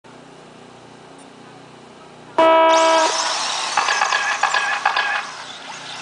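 A loud electronic start tone, one held beep about two and a half seconds in, and the electric 1/10-scale 4WD RC buggies launch off the grid with a high-pitched rising whine of their motors on the dirt.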